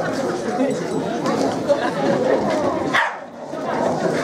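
Hall full of people chatting, with a bull terrier barking among the crowd.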